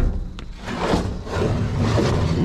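Wooden pallet being hauled up out of a metal dumpster: a knock at the start, then wood scraping and bumping against the dumpster's rim.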